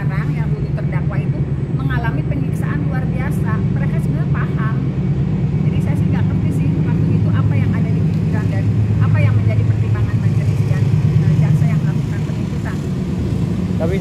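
A steady low engine rumble, like a motor vehicle running at idle close by, swelling slightly about two-thirds of the way through. Voices talk intermittently over it.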